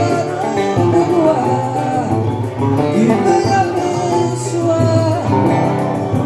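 Live acoustic music: guitar and cavaquinho being plucked and strummed, with a voice singing a slow melody over them.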